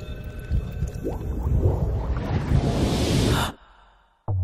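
Cinematic countdown sound effects: a low rumble with scattered hits, then a rising whoosh that builds and cuts off suddenly about three and a half seconds in.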